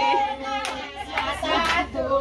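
A group of women clapping their hands in a steady rhythm along with their own singing.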